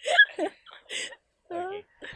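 A woman laughing, tailing off into short breathy giggles with small gaps between them.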